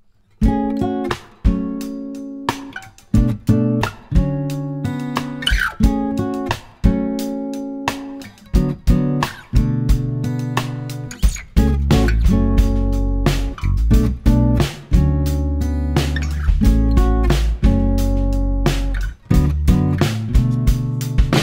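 Steel-string acoustic guitar strumming and picking chords, close-miked with an Audix A133 large-diaphragm condenser microphone. Deep low notes come in under it about halfway through.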